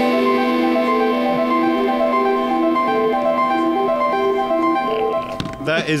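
Aud Calc, a tiny RP2040-based synthesizer and sequencer, playing a sequenced pattern: a steady drone under a melody of short stepping notes. The pattern stops about five seconds in.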